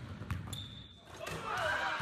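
A basketball bouncing on a hardwood gym floor, a few low thumps near the start.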